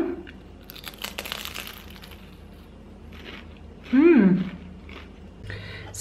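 A crisp bite into a fried sigara börek roll: a crackly crunch of the thin fried pastry lasting about a second and a half, then quieter chewing. About four seconds in comes a brief hum from the eater, rising then falling in pitch.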